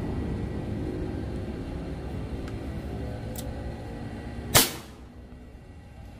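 A single shot from a PCP air rifle with a shroud silencer, one sharp crack about four and a half seconds in, fired as a chronograph velocity test. A steady background rumble runs beneath it and fades just before the shot.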